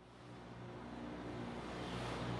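A vehicle's steady engine drone and road noise, fading in from silence and growing gradually louder.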